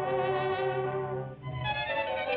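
Orchestral cartoon score: a held chord dips briefly about one and a half seconds in, then a new, busier passage begins.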